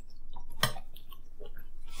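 Close-up chewing and biting of food, with a sharp crunch a little over half a second in from biting into toasted Texas toast.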